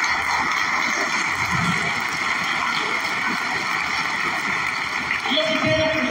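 Audience applauding steadily in a large hall.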